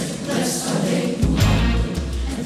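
Gospel choir of men's and women's voices singing through microphones, with strong low bass notes from the band underneath.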